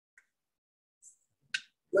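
A pause in speech: mostly quiet, with a faint tick early on and one short, sharp click about a second and a half in, just before a man's voice resumes at the very end.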